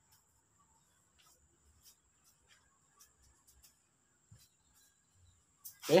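Near silence with a few faint, scattered ticks. Near the end a man says a short 'eh'.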